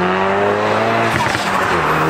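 Hyundai i30N's turbocharged four-cylinder engine pulling under acceleration, its note rising gently, with a short break about a second in. It breathes through a freshly fitted open-cone induction kit and runs with a resonator delete pipe.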